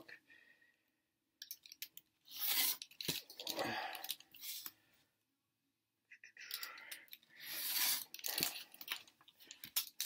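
Quiet scratchy strokes of pencil and craft-knife blade on a sheet of vinyl held against a steel ruler on a glass worktop, in two spells: one starting a second or so in, another about six seconds in.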